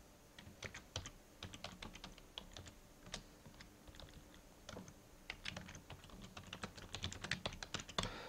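Typing on a computer keyboard: runs of quick keystrokes starting about half a second in, with a short pause about halfway through.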